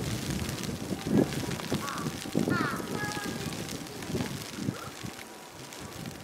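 Outdoor background of indistinct people's voices with a few short bird calls scattered through it.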